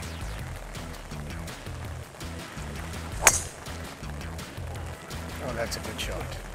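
A driver striking a golf ball off the tee: one sharp crack about three seconds in, over background music.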